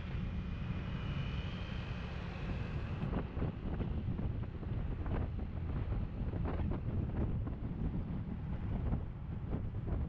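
Wind rushing over the microphone of a camera on a moving motor scooter, a steady low rumble with the scooter's engine running underneath.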